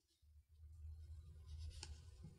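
Near silence: a faint steady low hum, with soft paper rustling and a small tick near the end as hands move over the pages of an open book.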